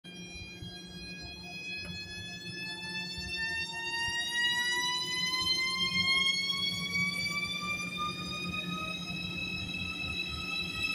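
ICE high-speed electric train pulling away, its traction motors giving a whine that rises steadily in pitch as it gathers speed. A steady low hum runs underneath.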